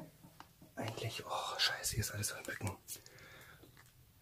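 Hushed whispered speech in a small room, in short phrases.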